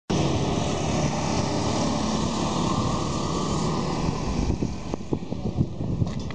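Road traffic with motorcycles passing, a steady dense rush of engine and tyre noise. After about four and a half seconds it thins out and a few short knocks are heard.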